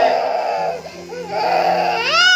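A toddler crying hard in two loud bursts, the second starting about a second and a half in, with background music underneath.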